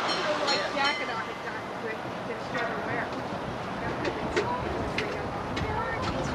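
Electric trolley car running on street track toward the listener, a steady rumbling haze with a few sharp clicks in the second half, while people's voices talk over it.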